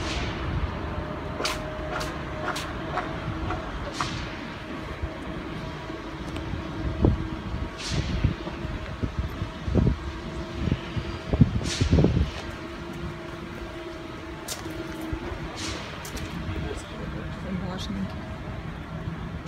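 A steady mechanical hum at two pitches that fades in and out, with scattered sharp clicks and a few low thumps, the loudest between about seven and twelve seconds in.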